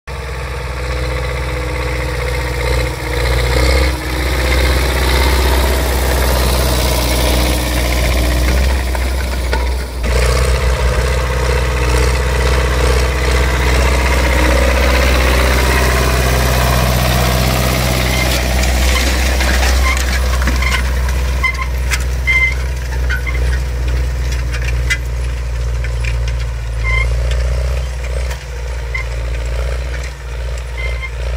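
An MTZ tractor's diesel engine running steadily under load while pulling a disc harrow through stubble. There is a brief dip about ten seconds in, and light clicks and rattles over the engine in the second half.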